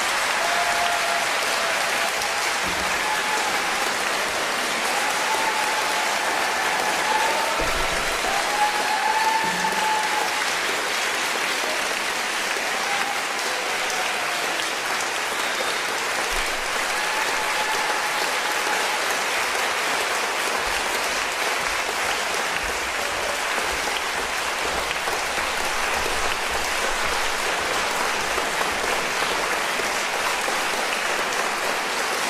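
Concert-hall audience applauding steadily, a dense even clapping, with a few voices calling out over it through the first two-thirds or so.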